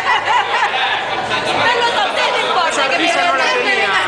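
Several voices talking over one another, a steady din of chatter from a crowded dinner table.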